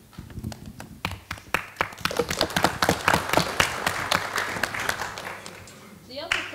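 A small audience clapping: a few claps about a second in, building to dense applause and thinning out near the end.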